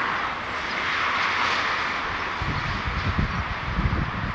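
Boeing 787-8 airliner's jet engines running as it flares to land, a steady hissing jet noise. From about halfway in, wind buffets the microphone with irregular low rumbling gusts.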